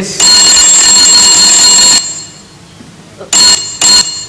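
Telephone bell ringing: one ring of almost two seconds, then two short rings near the end.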